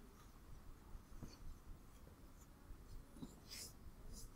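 Near silence: faint room tone with a few soft ticks and a brief hiss about three and a half seconds in.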